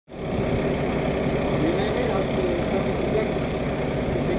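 Fire engine's diesel engine idling steadily, with faint voices talking in the background.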